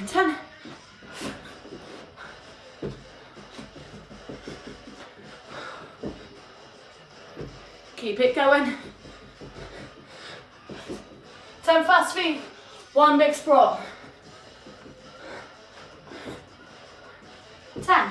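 A woman's voice in a few short bursts, with faint, soft footfalls between them from rapid stepping and sprawls in socks on carpet.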